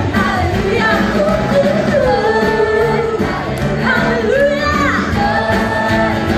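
A woman singing a Christian praise song through a microphone, with sustained, gliding melodic lines over steady musical accompaniment.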